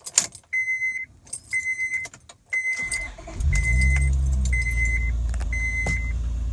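Keys clicking in the ignition while the dashboard chime beeps about once a second, then a Honda Pilot's J-series V6 cranks and catches about three seconds in and settles into a steady idle. It is running smoothly on six new ignition coil packs, fitted to cure a misfire.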